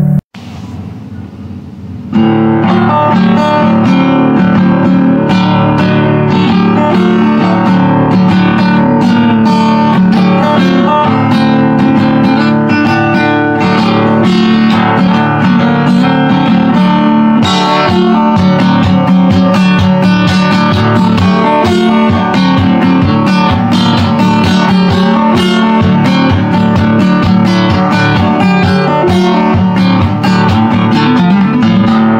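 Acoustic guitar: one piece stops abruptly just after the start, a quieter gap of about two seconds follows, then a new piece begins with steady, rhythmic plucked and strummed playing.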